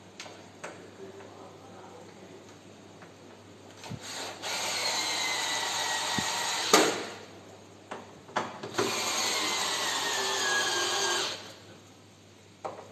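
Cordless drill-driver running two long bursts on screws in a washing machine's cabinet, its motor whine slowly dropping in pitch during each run. A sharp click ends the first burst.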